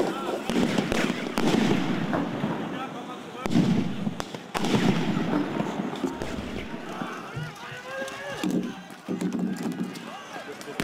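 Firecrackers and illegal pyrotechnic charges thrown at police going off in several sharp bangs, the loudest about a second in and around four seconds in, over a crowd's shouting.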